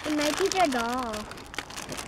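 Foil wrapping crinkling as fingers peel it open, in a scatter of small crackles. A soft, drawn-out voice sounds over it in the first second or so.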